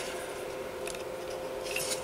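Faint rubbing and light scraping of a plastic model car chassis, an AMT '55 Chevy Bel Air kit, being handled and turned over in the hands, over a faint steady hum.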